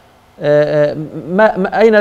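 Speech only: a man talking, after a short pause at the start.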